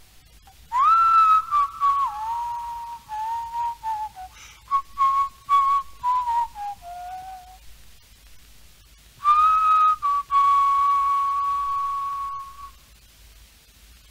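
Someone whistling a melody in two phrases, the second ending on a long held note, then only the hiss of an old cassette tape.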